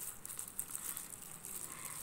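Faint, irregular crinkling of thin plastic food-handling gloves as hands crumble soft cupcake on a plate.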